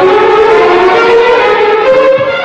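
Dramatic film background music: one loud, held, siren-like tone that slowly rises in pitch.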